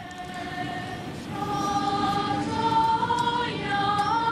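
A girls' choir singing a slow melody of long-held notes that climbs in steps.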